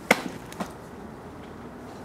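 A sharp knock, then a fainter one about half a second later.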